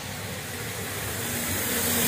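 A car approaching along the road, a steady rush of tyre and engine noise growing louder.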